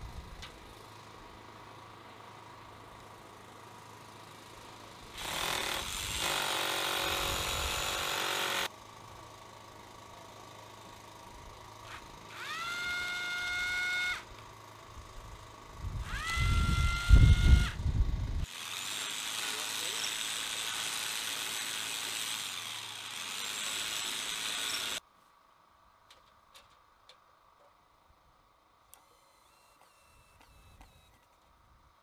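Cordless drill run in several bursts. Two short bursts open with a whine that rises in pitch as the motor spins up and then holds steady, and the longer stretches are a harsher noise as the bit bores into the surface. The loudest burst has heavy low knocking.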